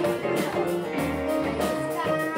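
A live blues band playing, with electric guitar and a drum kit.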